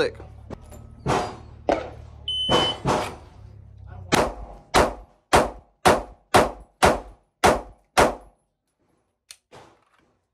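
A shot timer gives one short start beep, then a 9mm Glock pistol fitted with a Radian Ramjet barrel and Afterburner compensator fires about eight rapid shots, roughly half a second apart, the last one about 5.7 seconds after the beep.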